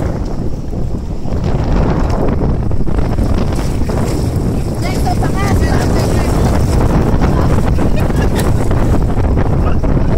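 Wind buffeting the microphone over open sea, with water splashing as swimmers haul themselves onto an inflatable banana boat. Short, high voices come in briefly about halfway through.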